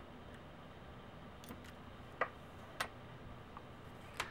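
A few light clicks of small hard parts being handled on the work surface. The loudest comes about two seconds in, with another just over half a second later.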